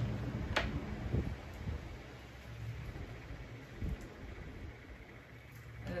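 Low steady hum of a small electric motor, louder for the first two seconds and then fading, with a sharp click about half a second in and a softer knock about a second in.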